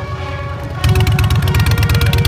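Orchestral music with strings plays throughout. A little under a second in, a cruiser motorcycle's engine cuts in suddenly, loud and rapidly pulsing, and becomes the loudest sound over the music.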